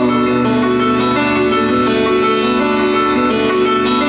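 Grand piano played live, sustained chords ringing.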